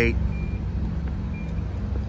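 2017 Infiniti QX80 power liftgate opening, its warning chime giving a short high beep about once a second over a low steady hum.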